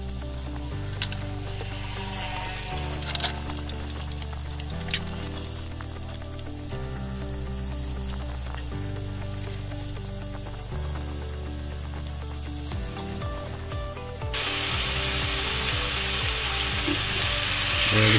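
Ox cheek searing in hot oil in a cast iron Dutch oven, a steady sizzle that grows clearly louder about fourteen seconds in. Background music runs under it, with a low bass note changing every couple of seconds and a fast ticking beat.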